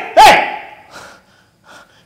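A person's single short startled cry of "hey!", rising then dropping in pitch and dying away within about half a second.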